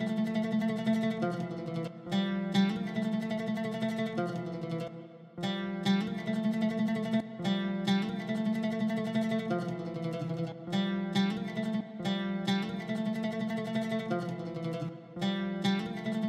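An orchestral woodwind recording plays back with sustained notes that change every second or so. It runs through a dynamic EQ whose mid-range band cuts only when that range gets too loud, which makes the tone cleaner.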